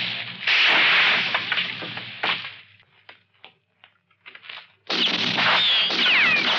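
Film-soundtrack gunfire: loud shots with whining ricochets, a quieter gap with a few scattered clicks in the middle, then more shots with falling ricochet whines near the end.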